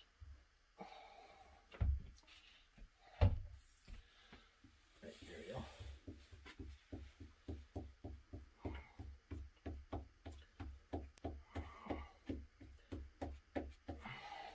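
Glue being spread over a leather panel with a wooden-handled tool in quick back-and-forth strokes, about three a second, each stroke a soft rub with a dull thud from the bench. Two sharper knocks come first, the louder about three seconds in.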